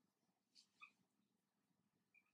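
Near silence, broken by two faint, short squeaks of a marker pen on a whiteboard, about half a second and just under a second in.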